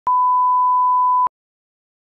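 A 1 kHz test tone, the steady reference beep that goes with SMPTE colour bars, sounding for just over a second and starting and stopping abruptly.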